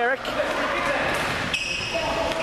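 Ball hockey play on a gym floor: sticks and the ball knocking against the sports floor, with a few sharp knocks, echoing in a large hall. A brief high-pitched squeal comes near the end.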